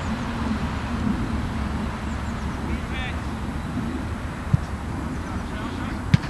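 Outdoor ambience at a football match: a steady low rumble on the microphone, distant players' shouts about three seconds in, and a single sharp knock near the end.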